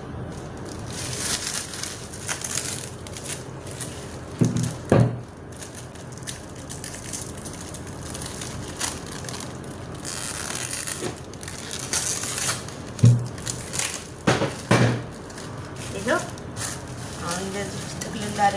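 Plastic cling film crinkling and crackling as it is pulled and stretched over a bowl of dough, with a few short low bumps.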